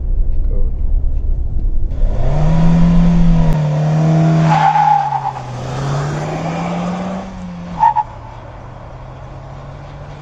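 Low road rumble inside a moving Hyundai Alcazar SUV gives way to the Alcazar accelerating away. Its engine note rises, dips and rises again, with a brief high-pitched squeal about five seconds in. It drops off sharply near eight seconds, leaving a quieter steady hum.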